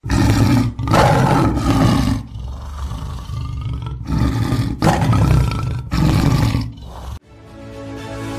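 Leopard roaring in a series of loud, rasping bursts, each about a second long with short gaps, stopping suddenly about seven seconds in.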